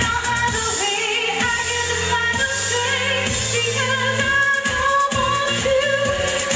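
A woman singing a pop-disco song into a microphone over a loud backing track with a steady beat and bass line.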